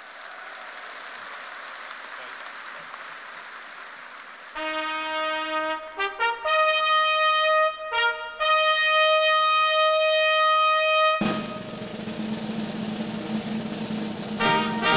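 A steady hubbub of the audience, then a brass fanfare of held trumpet notes from about four and a half seconds in, with short breaks between phrases. Near the end it gives way to fuller, lower orchestral music.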